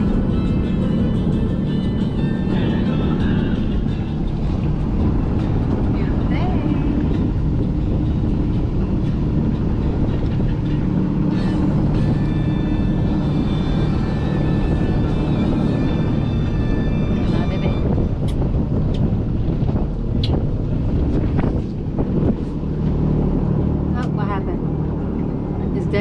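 Motorboat running at cruising speed: a steady engine drone with wind rushing over the microphone and water noise from the hull.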